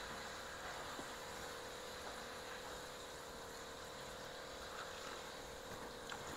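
Quiet, steady room hum and hiss, with a couple of faint ticks about one and two seconds in.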